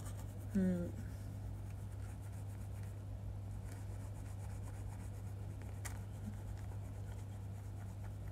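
Faint small scratching and clicking of a toothpick being worked between the teeth, over a steady low electrical hum. A brief vocal hum sounds about half a second in.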